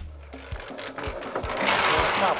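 Small drum concrete mixer running, with a regular low knock about twice a second under a steady mechanical noise.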